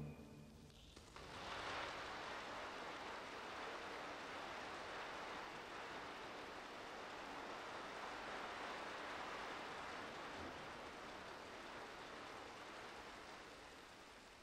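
Audience applause in a large concert hall. It swells in about a second in, holds steady, then dies away toward the end.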